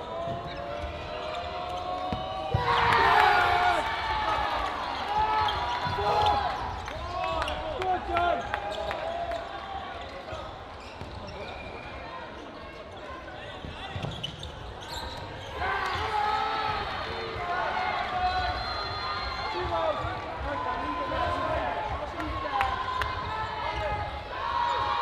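Indoor cloth-dodgeball play: players shouting calls to one another over the repeated thuds of cloth dodgeballs hitting the wooden court and the players. The loudest shouting comes about three seconds in.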